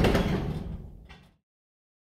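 A low rumbling noise with a faint click about a second in, fading out to silence within about a second and a half.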